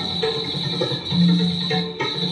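Instrumental karaoke backing track playing through a loudspeaker, with no voice over it, and a steady high-pitched whine above the music.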